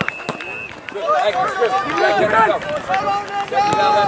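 Voices shouting across a soccer field during play, with calls from players and the touchline that are too distant to make out.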